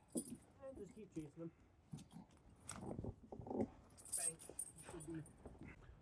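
Quiet metal clinks of truck snow chains as a cam-lock tool is turned to take up the chain slack, under faint, low voices.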